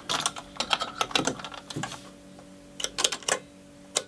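Guitar pedalboard footswitches being pressed by hand: a quick run of sharp clicks at the start, another cluster about three seconds in and one more at the end, over a faint steady tone.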